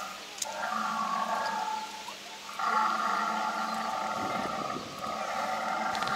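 Recorded dinosaur roar sound effect played from a T. rex model's speaker: long, steady growling roars of about two seconds each, separated by short pauses, three of them in succession.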